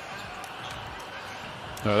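Basketball bouncing on a hardwood court over steady arena background noise.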